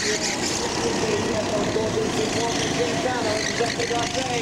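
Racing kart engines running as karts go past through a corner. The engine note wavers in pitch as the drivers work the throttle, with a voice heard under it.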